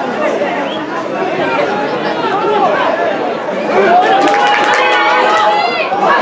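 Spectators at a football match chattering and shouting, many voices overlapping. The voices grow louder about two-thirds through, with one long held call and a few sharp knocks near the end.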